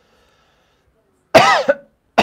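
A man coughs once, loud and sudden, about a second and a half in.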